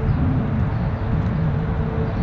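Steady low outdoor rumble with a faint steady hum running through it; no distinct door sound.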